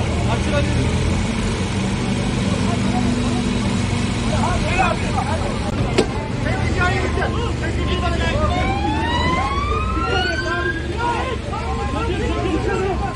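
A telehandler's diesel engine running steadily under the voices of a crowd. After a sudden click about halfway through, a steady beeping starts, and a rising whine climbs for a few seconds near the end.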